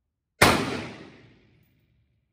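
A single rifle shot about half a second in: one sharp crack whose report dies away over about a second.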